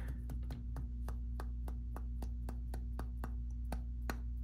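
Shirogorov Quantum folding knife worked by hand, giving rapid, even metallic clicks, about five a second, as the blade and lock are cycled; the lock releases cleanly with no lock stick.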